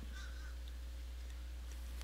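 Low, steady electrical hum with faint hiss under it: the recording's background noise floor.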